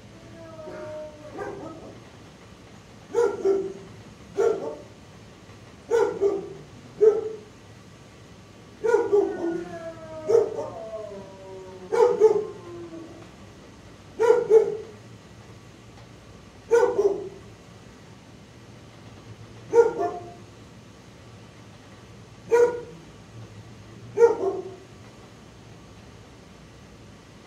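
Dog barking repeatedly in shelter kennels, short barks spaced a second or three apart. A few drawn-out calls that fall in pitch come in the middle.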